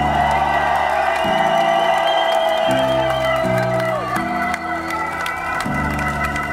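A live hip-hop band plays an instrumental passage without rapping. Sustained keyboard chords change every second or so under a long held high note that slides down about four seconds in, with fast ticking percussion on top.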